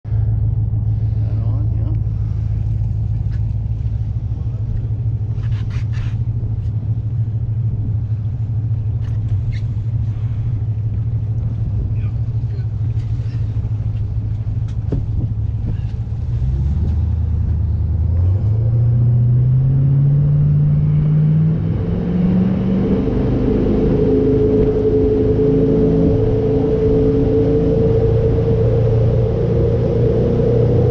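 Jet boat's 6.2-litre V8 running steadily at low revs, then opened up a little past halfway: the engine pitch climbs over several seconds and settles into a steady, higher-revving run as the boat gets under way.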